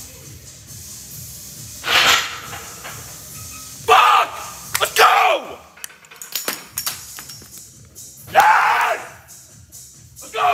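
Men yelling in excitement after a completed heavy barbell squat: four loud shouts a couple of seconds apart, over background music, with a few sharp clicks midway.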